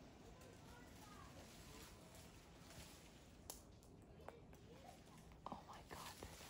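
Near silence: faint outdoor background with a few soft clicks, the last ones coming close together near the end.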